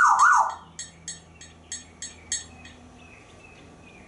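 African grey parrot whistling a siren-like swoop that rises and falls twice, then making a run of sharp clicks, about two or three a second, that stops near three seconds in.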